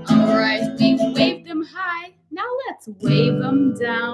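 An acoustic guitar is strummed while a woman sings along. Midway the guitar drops out for about a second and a half while her voice carries on, then the strumming comes back near the end.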